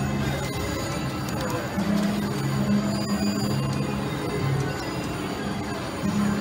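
Electronic slot machine music over the steady din of a casino floor: a low two-note figure repeating about once a second, which pauses briefly about half a second in and then picks up again.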